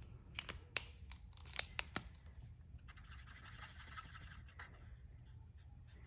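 Ohuhu alcohol markers being handled and used: several small, sharp clicks in the first two seconds, then a faint scratching of a marker tip across cardstock.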